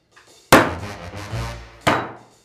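Two sharp whacks about a second and a half apart: hard rusks thrown and striking a man.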